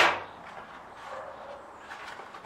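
A single sharp clack at the start as a hard plastic part is set down on a glass tabletop, fading quickly, followed by faint handling of packaging.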